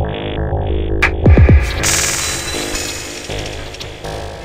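Dark techno track: a pulsing low synth bass pattern, then about a second in a loud synth sweep falling steeply in pitch, followed by a hissing noise wash that slowly fades.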